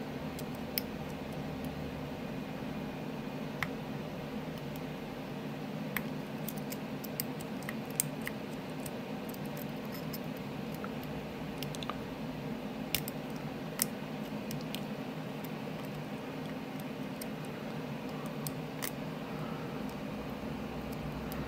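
Faint, scattered metallic clicks and ticks of a hook pick working the pin tumblers of a brass Silver Bird padlock under tension from a turning tool, over a steady low hum.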